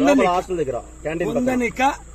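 A man talking animatedly in short bursts, with a steady high-pitched chirring of insects, likely crickets, running underneath.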